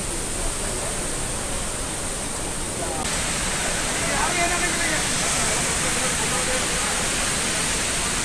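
Steady rushing noise of a waterfall cascading over rocks. It becomes louder and brighter after a cut about three seconds in.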